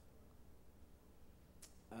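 Near silence: faint low room hum, with one short sharp sound about one and a half seconds in.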